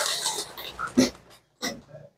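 A man breathing close to a handheld microphone during a pause in speech. A breathy exhale trails off, followed by a few short sniff- or throat-like sounds.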